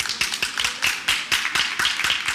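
Audience clapping: a quick, uneven run of distinct claps.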